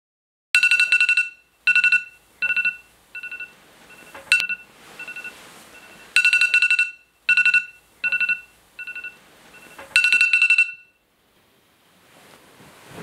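Smartphone alarm tone ringing: bursts of rapid pulsed beeping, each cycle one long loud burst followed by shorter, fainter ones, starting over about every six seconds. A sharp click comes about four seconds in, and the alarm cuts off partway into its third cycle, near the end.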